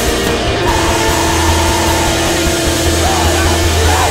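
Screamo band recording: loud, dense rock with distorted electric guitars over bass and drums, in a stretch without vocals.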